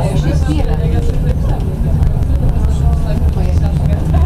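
SGP E1 tram running along its track, heard from inside: a steady low rumble of motors and wheels, with passengers' voices talking over it.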